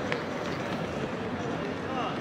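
Outdoor city-square ambience: unclear voices of passers-by, walking footsteps and a steady wash of background noise, with a small click just after the start.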